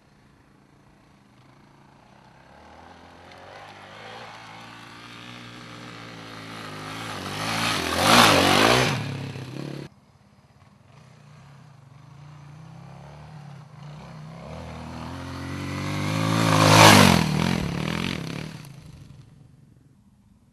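Two off-road motorcycles passing close by one after the other, each engine note growing louder as it approaches and fading as it goes. The first is cut off suddenly about halfway through.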